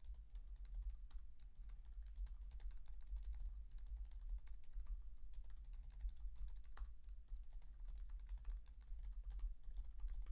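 Fast typing on a computer keyboard, a steady stream of light key clicks, over a low steady hum.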